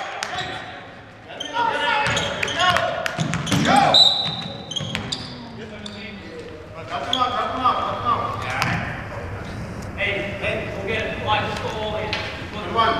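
Basketball bouncing on a hardwood gym floor now and then during play, with voices of players and onlookers echoing in the large hall.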